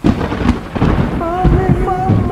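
Thunderstorm sound effect: a thunderclap breaks suddenly and rumbles on over steady rain. About a second in, a held, slightly wavering pitched tone with overtones enters over the storm.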